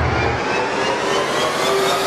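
A riser sound effect: a noisy whoosh with several tones slowly climbing in pitch, building toward a drop. A low bass note dies away in the first half second.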